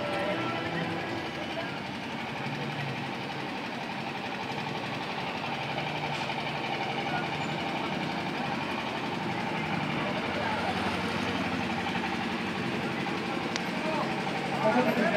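Steady street hubbub: indistinct voices of people standing about over a continuous engine rumble, with no single sound standing out.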